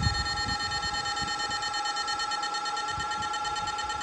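A 16-FET electrofishing inverter, its lid removed so it sounds louder, giving a steady high-pitched electrical whine made of two strong tones and fainter higher ones while its pulse-width knob is being turned.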